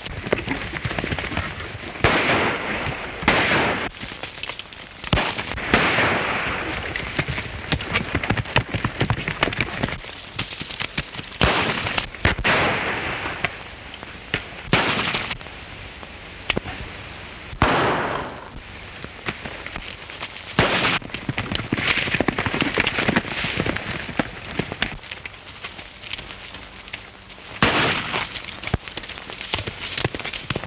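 Gunshots in a gunfight: about a dozen single shots at irregular gaps of one to several seconds, each with a fading echo, over a steady crackling hiss.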